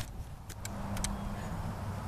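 A low steady hum, joined about half a second in by a steady slightly higher tone, with a few faint clicks.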